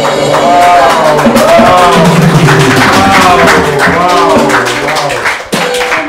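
A man singing a song live to his own Yamaha electronic keyboard accompaniment, a wavering sung melody over held keyboard chords.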